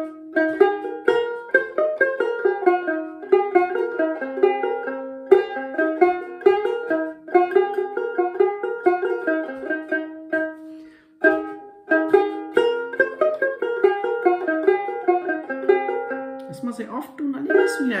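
A dramyin, the Himalayan long-necked plucked lute, playing a lively melody in quick plucked notes, with a brief break about eleven seconds in before the tune resumes. A voice comes in near the end.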